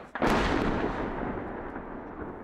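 A Kh-31 missile exploding about 700 yards away: a sudden loud blast a fraction of a second in, then a long rumble that slowly fades.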